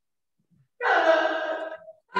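A person's loud voice, a cry or exclamation without clear words, held for about a second. It begins a little under halfway in, after a moment of quiet.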